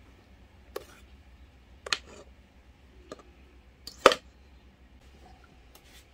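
Several short, sharp clinks and knocks of a metal mixing bowl and spatula against a glass baking dish while thick cake batter is poured in and scraped out; the loudest knock comes about four seconds in.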